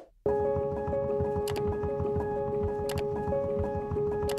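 Background music begins just after a brief gap, with held tones over a steady beat and a sharp tick about every second and a half.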